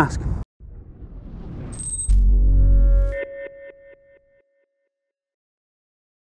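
Short electronic logo sting: a rising whoosh, a deep bass hit about two seconds in, then a chiming note that repeats in fading echoes and dies away by about four seconds.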